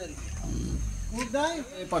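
People's voices calling out over a low rumble, the voices coming in about halfway through.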